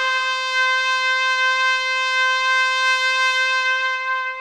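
Solo trumpet holding one long, steady note at the end of a short rising phrase.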